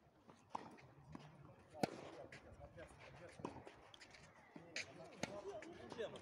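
Tennis ball struck by rackets in a rally: sharp pocks roughly every second and a half, the loudest about two seconds in, with faint voices in the background.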